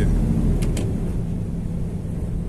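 Steady low engine drone and road noise inside the cab of a moving truck, with two brief faint ticks a little over half a second in.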